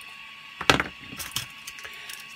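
Support material being picked and snapped out of a 3D-printed plastic part with a small hand tool: one sharp plastic crack a little under a second in, then a few lighter clicks.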